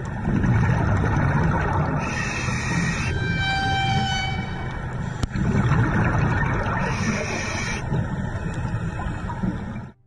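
Underwater camera sound of scuba diving: a steady low rumble of water and exhaust bubbles, with a hissing scuba-regulator breath about two seconds in and again about seven seconds in. Between them, a horn-like tone is held for about a second and a half.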